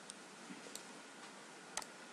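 A few faint, sharp computer mouse clicks over low background hiss, the loudest near the end.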